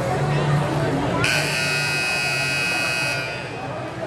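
Gym scoreboard buzzer sounding once, a harsh steady buzz lasting about two seconds, starting a little over a second in. Crowd chatter continues underneath.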